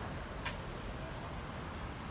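Steady outdoor background noise, a low rumble with hiss, with one short sharp click about half a second in.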